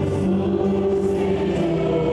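Mixed vocal quartet of two men and two women singing gospel in close harmony over band accompaniment, holding long notes.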